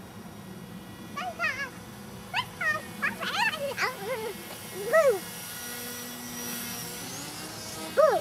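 A young child making a string of short, high-pitched whiny vocal sounds, each rising and falling in pitch, clustered in the first half and fading out after about five seconds.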